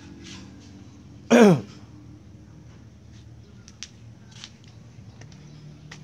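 A short, loud vocal sound falling in pitch, about a second and a half in, with a few faint clicks around it.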